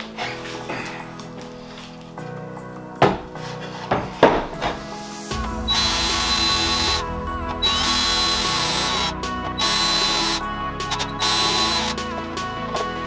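A couple of knocks of wooden boards being handled, then a red cordless drill running in four short bursts of high whine, about a second or so each, while the shelf pieces are fastened together. Background music plays throughout.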